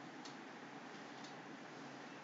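Faint ticking of a clock, one tick a second, over a low steady hiss.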